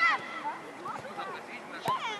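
Young footballers' voices shouting and calling out in short, high-pitched cries during play, with a sharp knock near the end.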